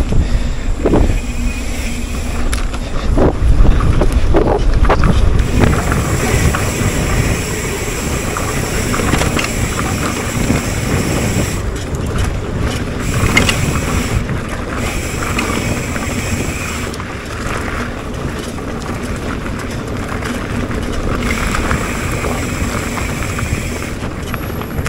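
Wind rushing over the microphone of a mountain bike riding along a dirt trail, with the rumble of knobby tyres rolling over the ground. Several sharp knocks and rattles from bumps in the first few seconds, then a steadier rolling rush.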